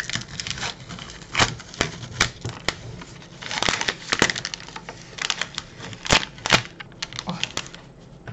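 Milka chocolate bar wrapper being opened by hand: the purple outer sleeve and white inner wrapper crinkle and rustle in a run of sharp crackles, densest about halfway through, with two loud crackles near the end.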